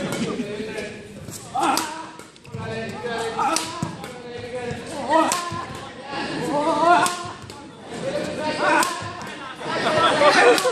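Badminton rackets striking a shuttlecock in a doubles rally, a sharp crack about every one and a half to two seconds, over the voices of a crowd in a large gym.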